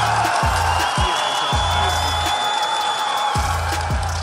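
Backing music with a deep kick-drum beat and sustained bass notes.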